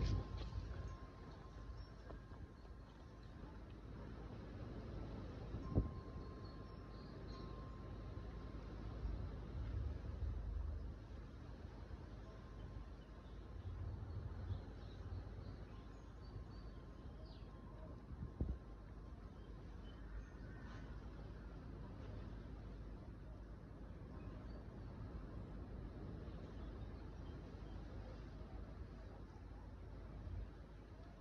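Wind buffeting the microphone as a low rumble that swells with the gusts, with two faint sharp knocks, one about six seconds in and one a little past eighteen seconds.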